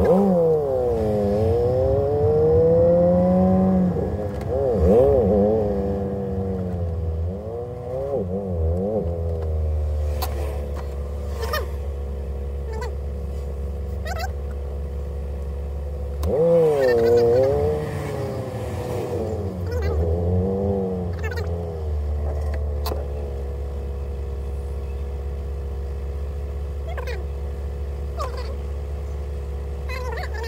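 Car engine heard from inside the cabin, creeping along in slow traffic: a steady low drone at low revs, with the engine pitch dipping and rising twice as the car moves off and slows, once at the start and again about two-thirds of the way in.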